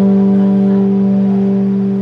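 A live rock band's last chord on electric guitars and bass, held and ringing out as it slowly fades.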